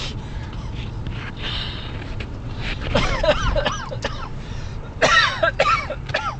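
People laughing in bursts inside a moving car, with a steady low road rumble under them; the loudest bursts come about three and five seconds in.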